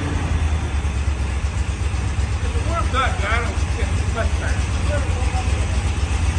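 1967 Corvette's 427 V8 with Tri-Power triple carburetors idling steadily with a fast, even low pulse while the carburetors are being adjusted.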